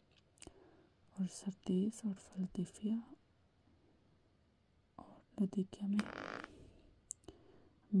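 A soft voice reading aloud, hesitating over a repeated word, then a pause of about two seconds before it goes on. About six seconds in there is a short breathy rush of noise.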